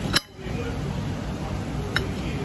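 Knife and fork clinking against a ceramic plate while cutting battered fish: one sharp clink just after the start and another near the end, over a steady background din. The background drops out briefly right after the first clink.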